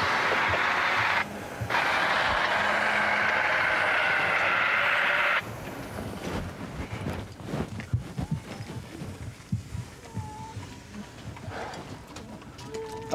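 Hand-held fire extinguisher discharging onto a burning rolled-over vehicle: a loud hiss that stops about a second in, then a second, longer blast that cuts off around five and a half seconds in. After it, quieter knocks and scrapes.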